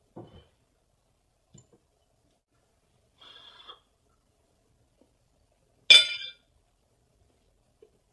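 A few faint handling sounds, then one sharp clink of a metal utensil against a plate about six seconds in, with a brief ring.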